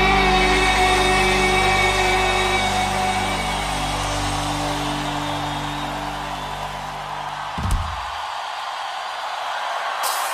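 Live worship band holding a final sustained chord on electric guitar and bass, slowly fading. About three-quarters of the way through, the chord cuts off with a thump, leaving a quieter hiss of live-room audience noise.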